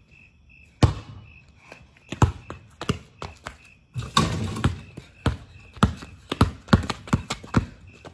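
Basketball dunk on a driveway hoop: sharp thuds of the ball bouncing and feet on the pavement, then a rattling clang of the rim and backboard about halfway through, followed by a quicker run of bounces and steps.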